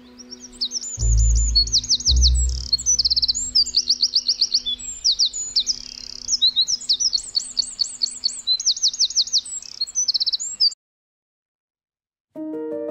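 Eurasian wren singing one long, rapid song of high trills and chirps that cuts off abruptly near the end. Two low thumps sound about one and two seconds in.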